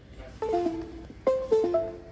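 Two short runs of plucked, chime-like electronic notes, about half a second and a second and a quarter in: device notification chimes as the phone's USB mode is switched in service mode.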